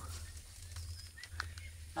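A few faint, short bird chirps about a second in, over a low steady rumble.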